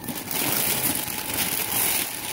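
Gift wrapping and tissue paper rustling and crinkling steadily as a present is unwrapped by hand.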